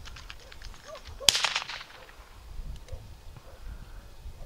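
A single distant gunshot about a second in, its report trailing off briefly. At a retriever trial this is the shot fired from the field as a mark is thrown for the dog.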